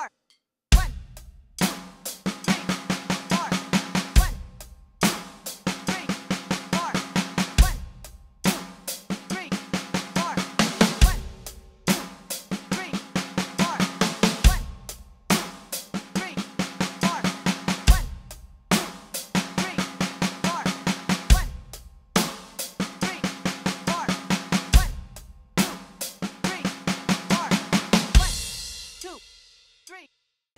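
Roland electronic drum kit playing a rock groove at 70 beats per minute: eighth-note hi-hat, bass drum and an offbeat left-hand snare hit, then two beats of sixteenth-note single strokes on the snare, nine snare hits in all. The one-bar pattern repeats about every three and a half seconds, and near the end a cymbal rings out and fades.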